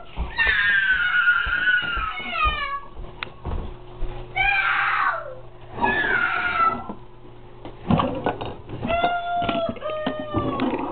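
A young boy crying and wailing in fright, in a series of long, high-pitched wails that mostly fall in pitch.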